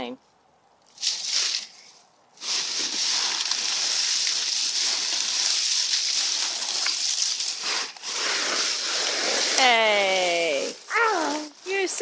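Dry fallen leaves rustling and crunching steadily for several seconds as a small child shifts around in a leaf pile. A voice breaks in near the end.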